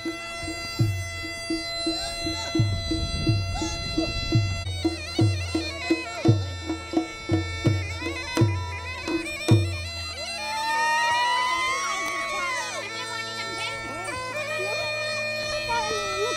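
Kumaoni wedding procession band: mashakbeen (hill bagpipe) drones and melody over steady drum strokes. The drumming stops about ten seconds in, leaving the pipes' drone and a melody line that rises and falls.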